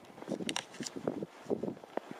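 Footsteps crunching in fresh snow: a run of short, irregular crunches.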